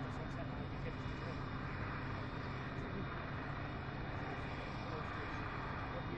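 Krone Big X 650 forage harvester chopping maize, with the tractor pulling the trailer alongside it: a steady engine drone with an even hum of machinery over it.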